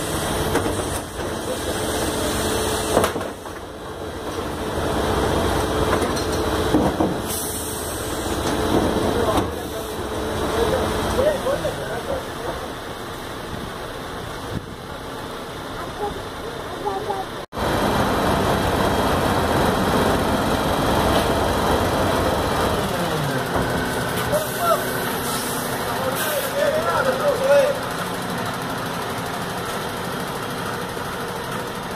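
Faun Rotopress garbage truck running at the curb, its drum turning continuously, while the hydraulic lifter tips a wheelie bin into the back and lowers again. People talk over the machine noise.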